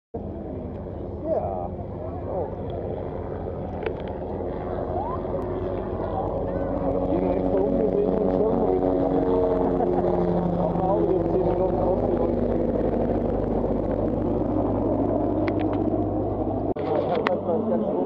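Portable generator running with a steady hum that grows louder through the middle, under the chatter of passing people; the hum stops abruptly near the end.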